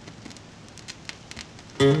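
Faint hiss with scattered small clicks, then near the end an acoustic guitar comes in loudly with a struck chord as the bossa nova song starts.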